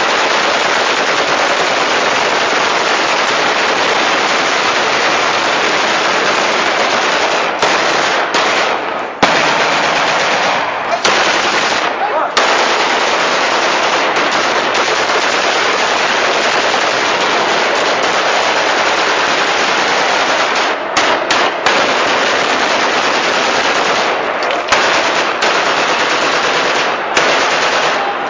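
Celebratory rifle fire into the air, the shots coming so fast they run together into a loud, near-continuous crackle, broken only by a few brief pauses.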